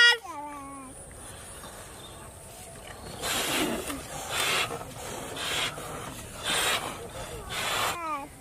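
Breathy puffs of air blown by mouth into rubber balloons to inflate them, coming in a series roughly once a second from about three seconds in.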